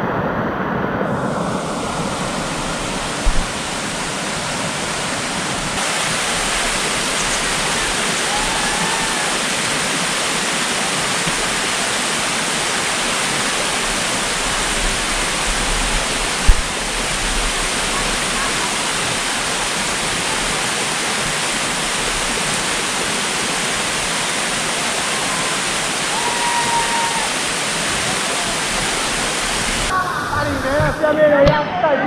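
Water rushing down the smooth rock chute of a slide waterfall, heard close up as a loud, steady rush. A brief knock comes about three seconds in, and a sharper, louder one about halfway through.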